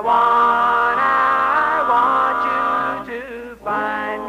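Male doo-wop vocal group singing a cappella in close harmony, holding a long chord that breaks off about three and a half seconds in before the voices come back in.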